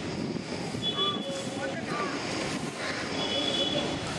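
Outdoor ambience dominated by wind noise on the microphone, with faint distant voices. Short high-pitched tones sound about a second in and again after three seconds.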